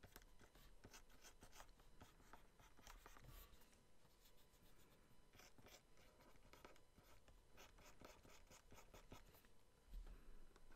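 Faint, irregular scratching of a pen stylus drawing short strokes on a Wacom graphics tablet.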